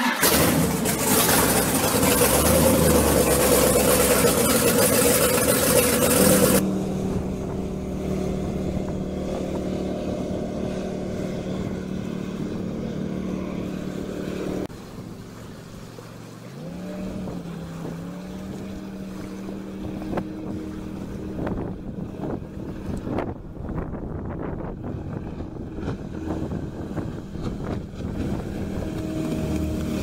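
Jet boat with a Berkeley jet pump running on a river, the pump's water circulation and wind louder than the engine. A loud rushing noise fills the first few seconds, then a steady running tone; about halfway the pitch rises as the boat speeds up, and it grows louder near the end as the boat passes close.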